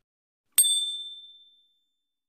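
Notification-bell 'ding' sound effect of a subscribe-button animation: a single bright strike about half a second in, ringing high and fading away over about a second.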